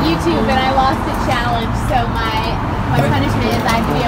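People talking at a sidewalk table, with road traffic running underneath as a steady low rumble.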